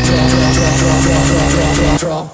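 Electronic dance music in a techno/house mix, at a build-up: a synth sweep slowly rising in pitch over a sustained bass note and a fast repeating pattern.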